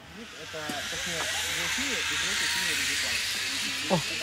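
Zipline trolley running along a steel cable: a steady whirring hiss that swells over the first second as the rider comes overhead, with voices murmuring beneath.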